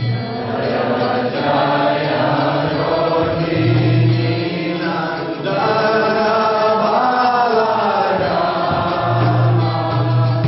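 A man singing a slow Vaishnava devotional song to a raga, drawing out long held notes.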